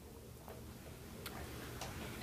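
Quiet room with a steady low hum and three faint clicks, irregularly spaced.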